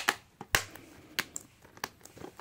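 Plastic DVD cases being handled and shifted against each other: a handful of sharp clicks and taps, loudest near the start and about half a second in.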